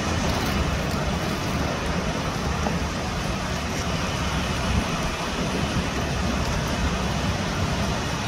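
Waves breaking on a rocky shore, a steady wash of surf noise with a strong low rumble.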